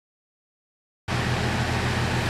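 An outdoor air-conditioner condensing unit running: a steady rushing noise with a low, even electrical hum, cutting in abruptly about a second in after silence.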